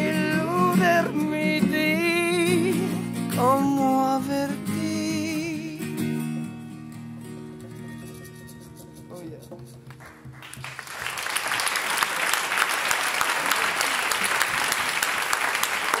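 A man sings with a wavering voice over strummed acoustic guitar for about six seconds. The guitar then rings out and fades as the song ends. About two-thirds of the way in, the audience breaks into applause that continues to the end.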